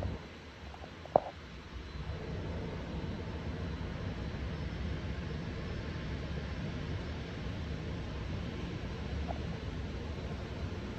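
Steady outdoor background noise: a low rumble with a hiss over it, rising a little about two seconds in, with one sharp click about a second in.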